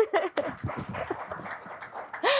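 Brief laughter and low murmuring from a lecture-room audience, mixed with small scattered knocks and rustles.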